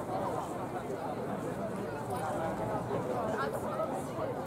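Indistinct voices of people talking in the background, with no clear words, at a steady level.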